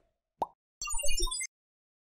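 Logo animation sound effect: a single pop about half a second in, then a short sparkly flurry of blips stepping down in pitch over a low thump, cutting off suddenly.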